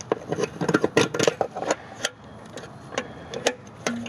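Metal fuel-filter clamp being worked by hand over the filter and steel fuel lines: a run of light clicks, knocks and scrapes, thickest in the first half and a few more near the end.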